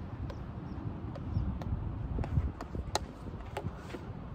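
Low rumble with about half a dozen sharp, light clicks and taps scattered through it.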